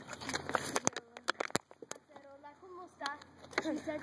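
Several short, sharp clicks and knocks in the first two seconds, then quiet talking in the background.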